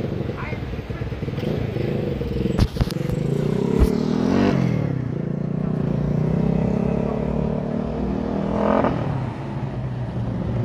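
Street traffic: a vehicle engine running steadily, its pitch dipping and rising again around four to five seconds in. Two sharp knocks come about a second apart near three seconds.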